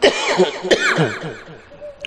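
A man coughing into a microphone over a public-address system, loudest in the first second and then dying away.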